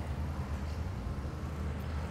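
A steady low background hum with a faint even hiss, like distant traffic, between spoken lines.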